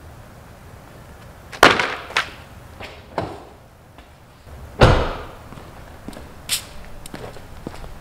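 A few sharp slaps and knocks, then a heavy thump about five seconds in, from stiff old vinyl car floor mats being handled and set down.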